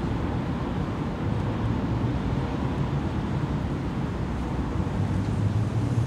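Steady city traffic ambience: a low, continuous rumble of vehicles with a street-noise hiss over it.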